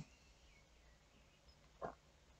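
Near silence: room tone, with one brief faint sound near the end.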